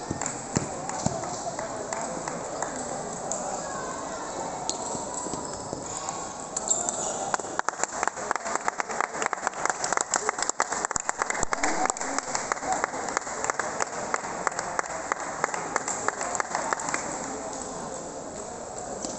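Celluloid-style table tennis ball clicking off bats and the table in a rally, a fast, dense run of sharp clicks about halfway through, over a steady murmur of voices in a large hall.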